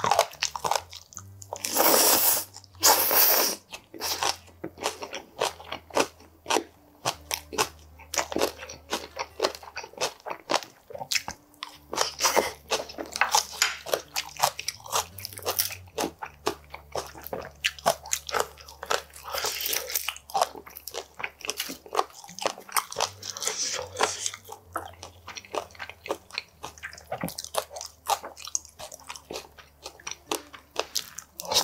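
Close-miked eating: chewing and crunching of oven-roasted chicken wings and shredded green onion, with rapid wet mouth clicks throughout and a few louder crunchy bites, two of them close together just after the start.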